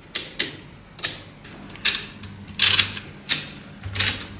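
Wooden date drums of a ROKR 'Time Engine' desk calendar being turned by hand, giving irregular wooden clicks and clatters as the rings move, with the busiest run of clicks a little past the middle.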